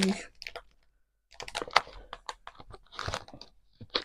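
Clear plastic packaging sleeve crinkling as it is handled and opened, a dense run of small crackles with a short pause about a second in.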